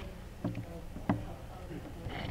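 Two dull knocks about half a second apart over a low room hum.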